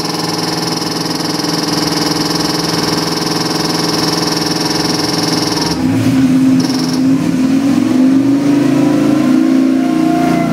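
LS3 376 cubic inch (6.2 L) V8 crate engine on a dyno, idling steadily, then about six seconds in it begins a pull under dyno load, its revs and pitch rising steadily.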